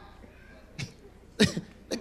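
A person coughing: three short, sudden coughs from about a second in, the middle one loudest.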